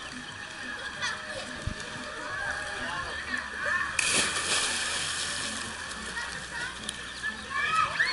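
A close splash of pool water about halfway through, sudden and loud, fading over a second or so, over a steady background of voices.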